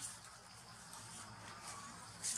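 Faint, steady high-pitched insect chorus.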